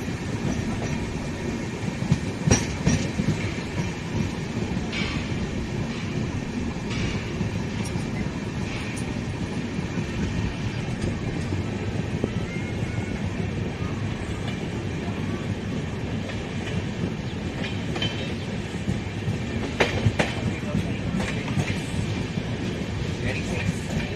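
Express train coach rolling along the track, heard from its open doorway: a steady wheel-and-rail rumble with a few sharp clacks as the wheels pass over rail joints and points.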